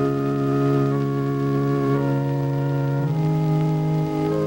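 Organ music: slow, sustained hymn-like chords, the harmony shifting about once a second.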